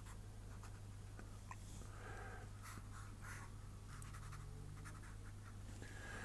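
Fineliner pen drawing short strokes on paper: faint, scratchy pen-on-paper sounds.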